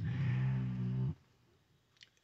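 A man's voice holding one low, steady note for about a second, a drawn-out hesitation sound between phrases, then it stops abruptly.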